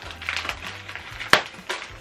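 Rustling and crinkling of packaging as a taped-up small box is handled and picked open, with one sharp snap about a second and a half in.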